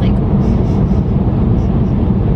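Steady low rumble of a moving car, heard from inside the cabin while driving.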